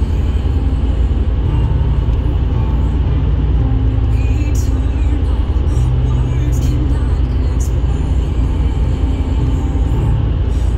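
Road noise inside a car cruising on a highway: a steady low rumble of tyres and engine.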